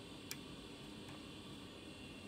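A single faint click of a metal BNC bayonet connector on a coaxial cable locking onto a BNC T-connector, over low hiss.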